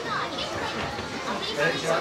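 Indistinct chatter of people nearby: scattered voices, some high-pitched, over a general murmur, with no clear words.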